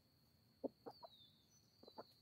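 Hens clucking softly as they forage on grass: a few short clucks, three in quick succession about halfway through and another near the end.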